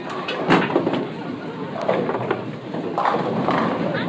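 Indistinct voices talking in a busy room, with a sharp click about half a second in.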